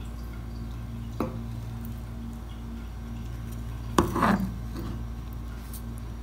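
A white ladle knocking against a non-stick pan and serving plate while curry is dished out: a light click about a second in, then a louder knock with a brief scrape about four seconds in, over a steady low hum.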